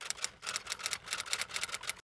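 Typewriter key-click sound effect: a rapid run of clicks, about ten a second, as text is typed onto a title card.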